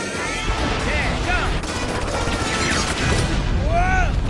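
Animated-film action soundtrack: music mixed with crashes, gunfire-like bangs and short yells from a character near the end.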